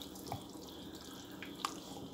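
Ladle stirring a thin meat stew in a large aluminium pot: faint liquid sloshing with a few light clicks.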